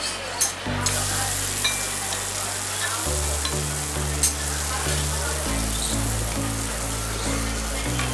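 A dosa sizzling on a hot cast-iron griddle, with a metal spatula scraping and tapping on the plate, including a sharp tap about four seconds in. Background music with held low notes plays under it.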